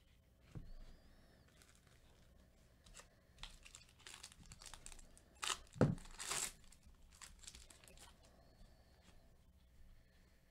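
Foil wrapper of a Topps Chrome card pack being torn open and crinkled, a run of crackling that is loudest about halfway through, with a dull thud in the middle of it.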